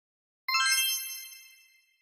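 A bright, sparkly chime sound effect: a cluster of high ringing tones that comes in suddenly about half a second in and fades out over about a second, marking the reveal of the answer page.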